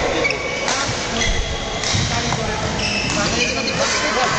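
Badminton rally: racket strikes on the shuttlecock and short high squeaks of court shoes on the floor, over background voices chattering.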